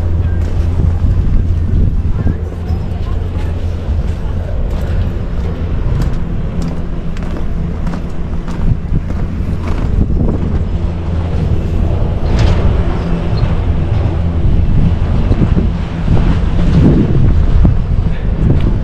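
Wind buffeting a handheld camera's microphone, a dense low rumble with a steady low hum beneath it.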